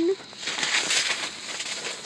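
Cardboard boxes and plastic bags rustling and scraping as they are rummaged through by hand, a dense crackly rustle that is busiest in the first second and a half and thins out near the end.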